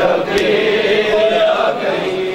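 A crowd of male mourners chanting a noha together, their many voices overlapping, with a sharp slap of hands on bare chests (matam) about half a second in.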